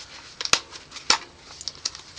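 Snap fasteners on the flaps of a nylon magazine pouch being worked by hand: a few sharp clicks, the loudest about half a second in, another about a second in, then lighter ticks near the end.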